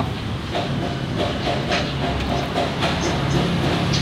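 Steady low rumble with a hiss over it, an even outdoor background noise with no clear single source.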